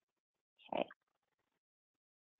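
One brief, grunt-like voice sound from the presenter, about a second in, on an otherwise silent webcast line while her laptop connection has dropped out.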